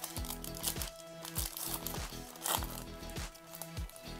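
A foil trading-card pack wrapper crinkling and tearing in short bursts as it is opened by hand, over background music.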